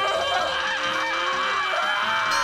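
A cartoon puppet character's long, loud, wavering vocal cry, comic and nasal.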